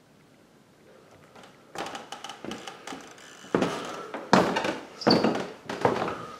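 Footsteps thudding on carpeted stairs, starting about two seconds in at roughly one step every three-quarters of a second and growing louder.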